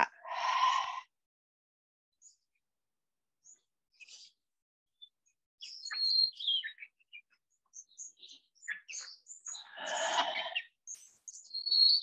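Small pet bird chirping in short, high calls, some gliding down in pitch, scattered through the second half. A long breath out at the start and another breath about ten seconds in.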